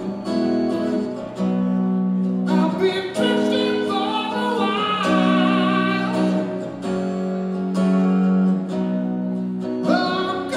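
Live solo acoustic performance of a slow rock song: a male voice singing long held notes over acoustic guitar.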